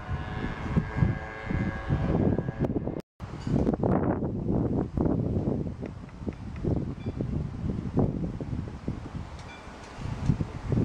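Wind buffeting the camera microphone in uneven gusts, with a faint hum of several steady tones over the first two and a half seconds. The sound cuts out completely for a moment about three seconds in.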